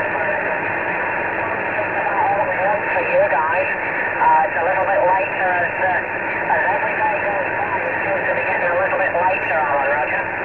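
A distant station's voice received over an 11-metre CB radio, thin and cut off in the treble, riding on steady static hiss, the words hard to make out.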